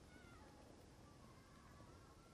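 Near silence, with a few faint, high, drawn-out animal calls in the background, gliding in pitch.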